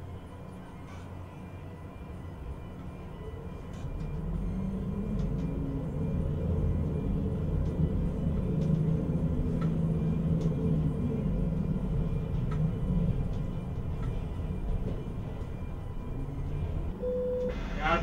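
Low, steady drone of a ship-to-shore container crane's machinery heard inside the operator's cab, growing louder about four seconds in as the crane moves its load.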